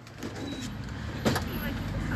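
Low, steady rumble of a minibus engine running, with voices and one sharp knock a little over a second in as the detached sliding door is handled.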